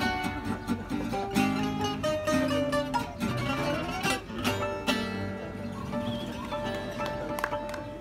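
Acoustic gypsy-jazz jam: guitars strumming swing rhythm under a plucked domra and guitar lead. In the last few seconds the playing thins out to quieter, held, ringing notes.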